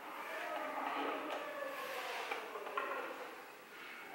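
Faint room noise with a few light clicks and knocks as a violinist handles the violin and bow before playing.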